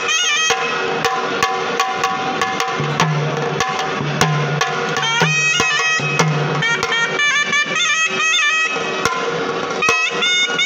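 Traditional shehnai playing an ornamented melody of gliding and stepping notes over a steady drone, with a pair of small drums beaten with sticks keeping a rhythm of sharp strokes.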